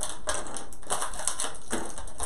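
Clear plastic packaging crinkling and rustling in the hands as small plastic toy parts are unwrapped, a dense run of crackles and clicks.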